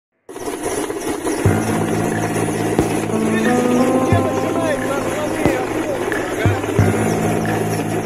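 Helicopter cabin noise: a loud, steady engine and rotor din with a thin high whine, with voices and occasional knocks over it.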